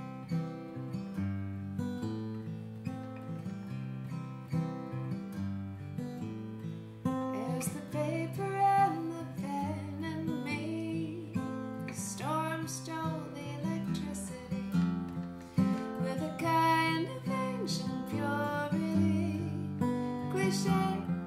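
Acoustic guitar playing a song's intro, with a woman's singing voice joining about seven seconds in.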